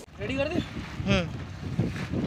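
Men's voices talking outdoors in short bursts, with wind buffeting the microphone and a low rumble underneath.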